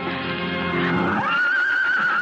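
Background music under a stallion's whinny, which rises about a second in and holds a high, quavering note.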